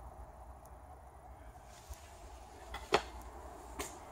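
Quiet workshop room tone with a low steady hum, broken by two sharp clicks or taps near the end, the first the louder.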